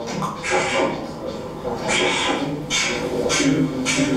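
Beatboxing: vocal percussion with short hissing hits about every half second to a second, mixed with voices, from a hip hop workshop recording played over a hall's speakers.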